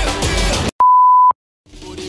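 Pop dance music cuts off abruptly. After a brief gap a single loud electronic beep sounds, one steady pure tone lasting about half a second. After another short silence, different music fades in near the end.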